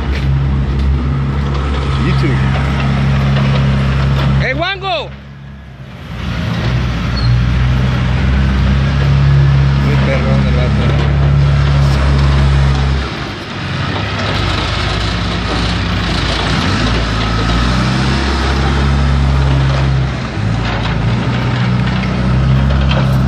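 Diesel engine of heavy grading equipment running up close, its pitch shifting as the machine works. The engine sound dips briefly about five seconds in and again around the middle.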